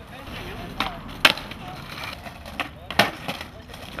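Skateboard on asphalt: a handful of sharp wooden clacks as the deck is popped and slaps the ground during a trick attempt, the loudest a little over a second in.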